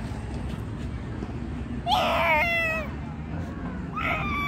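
A child's high-pitched call, just under a second long, about halfway through, its pitch stepping down once, over steady low background noise.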